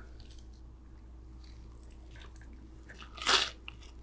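One crunchy bite into a toasted grilled cheese sandwich a little over three seconds in, after a few faint small mouth clicks.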